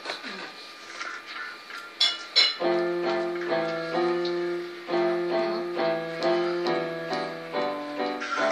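Electronic keyboard played with both hands, a simple beginner piece of steady melody notes over held chords. After a quiet start, the playing begins in earnest about two and a half seconds in.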